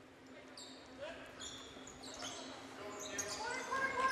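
Faint basketball-gym sound: brief sneaker squeaks on the hardwood court and scattered voices, growing a little louder toward the end.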